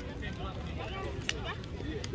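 Many young voices talking over one another as players slap hands down a postgame handshake line, with a sharp hand slap a little past halfway, over a steady low rumble.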